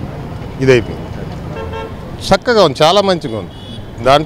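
A man talking close to the microphone over roadside traffic noise, with a short vehicle horn toot in a pause in the middle.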